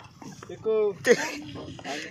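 Boys' voices calling out: a short high-pitched call about halfway in, then a louder shout around the one-second mark.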